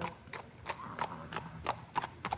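Horse hoofbeats: a run of quick, irregular clip-clop strikes, a few each second.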